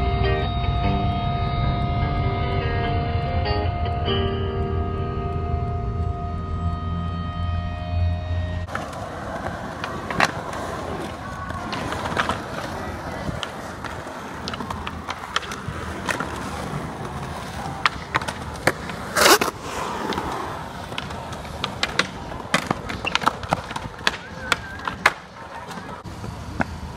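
Music with a heavy bass line for the first eight or nine seconds, then skateboard wheels rolling on concrete with repeated clacks and board impacts. The loudest is a sharp crack about nineteen seconds in.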